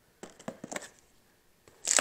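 Rebuild-kit parts and their cardboard boxes being handled on a tabletop: a quick run of rustles and light taps in the first second.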